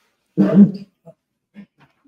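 A woman's short laugh: one loud burst, then a few faint chuckles.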